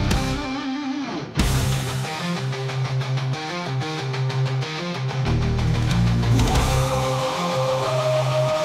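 Instrumental passage of an AI-generated heavy power metal song: distorted electric guitars over drums and bass. After a brief thinned-out break, the full band comes back in hard about a second and a half in and keeps driving on.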